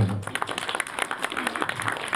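Audience applause: many hands clapping at once in a dense, irregular patter.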